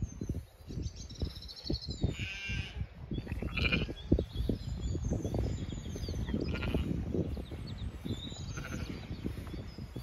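Zwartbles sheep bleating: one long, wavering bleat about two seconds in, then a few shorter calls. Birds chirp faintly behind, over a steady low rumble of wind on the microphone.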